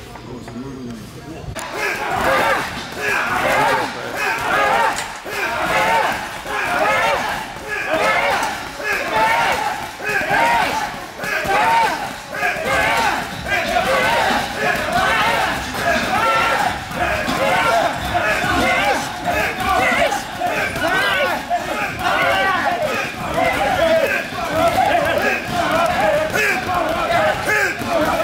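Music with a singing voice over a steady pulse that swells about once a second.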